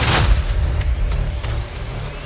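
Closing-credits theme music with its bass dropped out. A hissing whoosh sound effect opens it, followed by light ticking percussion and a rising sweep near the end.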